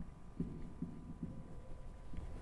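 Marker pen writing on a whiteboard: faint soft knocks, about two or three a second, as the strokes hit the board, over a faint steady hum.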